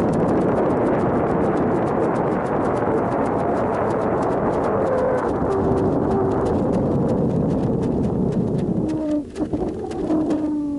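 Dense rushing noise with rapid, continuous clicking picked up by the camera inside a high-altitude weather balloon payload in flight. About nine seconds in, the noise drops and a steady low tone with overtones comes in.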